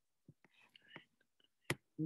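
Soft whispering for about a second, followed near the end by a single sharp click.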